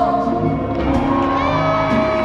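Live pop music from a band with a female lead singer holding sung notes, one of them sliding up and held near the end.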